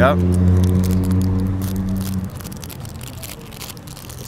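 An engine hums steadily and cuts out about two seconds in, with light crackling over it.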